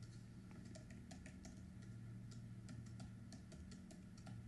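Faint typing on a computer keyboard: irregular key clicks, several a second, over a low steady hum.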